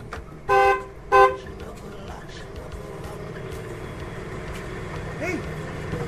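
Car horn sounded twice in quick succession, two short toots, followed by the steady low running of a car's engine as it pulls up.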